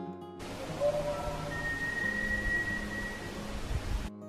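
Steady hiss of outdoor background noise, with a thin high tone held for about two seconds in the middle and a few short faint tones before it. Acoustic guitar music stops just before the hiss begins.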